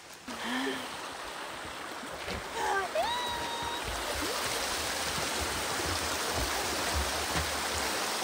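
Stream water rushing steadily, coming up about half a second in, with a short whistle-like note about three seconds in.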